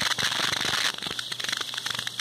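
Dense crackling and rubbing handling noise from a hand-held phone being moved against its microphone, a little softer in the middle.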